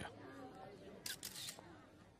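Two quick camera shutter clicks about a second in, over faint crowd chatter.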